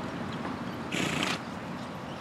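A carriage horse snorting once, a short breathy blow of about half a second, roughly halfway through, over steady outdoor background noise.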